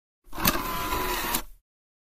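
Short intro sound effect: a burst of noise about a second long, with a sharp click as it starts and another just before it cuts off.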